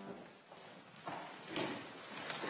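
A held chord of the hymn accompaniment cuts off at the very start. Then a few soft knocks and shuffles sound in the reverberant sanctuary, about a second in and again near the end.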